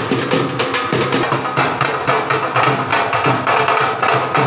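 Drums played by a group of street drummers, beating a fast, steady, dense rhythm.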